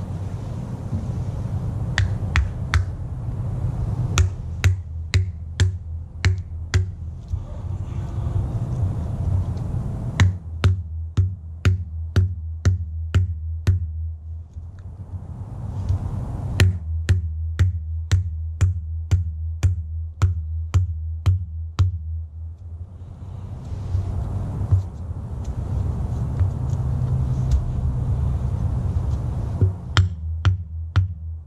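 Hammer striking the plastic cap on a fertilizer spike, driving the spike into lawn soil: runs of sharp taps about two a second, in three main bouts with pauses between, over a steady low rumble.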